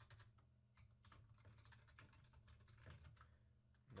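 Faint computer keyboard typing: scattered, irregular key clicks over a low steady hum.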